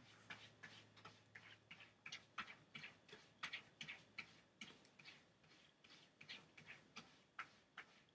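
Cat scratching: faint, irregular scratches, about three or four a second.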